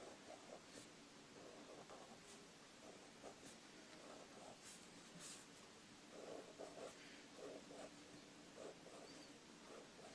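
Faint scratching of a Staedtler Pigment Liner 0.3 fineliner nib on paper, drawn in many short, quick strokes.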